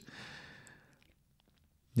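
A man's breathy sigh or exhale, fading out within about a second, followed by near silence.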